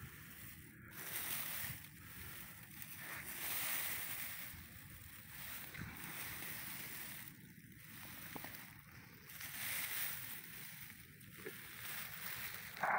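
Faint rustling of dry, cut buckwheat stalks as a hand parts and turns over the windrow, coming in swells every second or two with a few small crackles.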